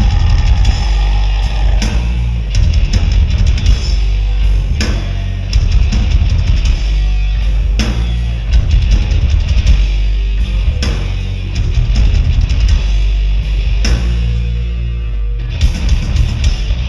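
Live heavy metal band playing loud: distorted electric guitar, bass guitar and a drum kit, with hard accents recurring every few seconds, heard from the audience.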